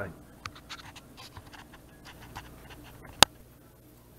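Faint, scattered small scratches and ticks, then a single sharp, loud click about three seconds in.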